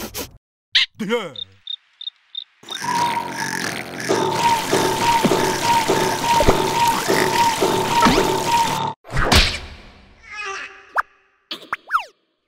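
Cartoon sound effects over music: a wobbly falling boing, then a string of six short high blips. Then about six seconds of gushing, spraying water with a steady high tone and a regular beat, which cuts off suddenly, followed by short squeaky effects near the end.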